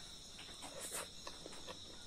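Crickets chirring steadily in the background, with a few faint clicks of chewing and mouth sounds from eating rice by hand.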